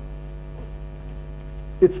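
Steady electrical mains hum, a buzz of many evenly spaced overtones that holds unchanged; a man's voice starts near the end.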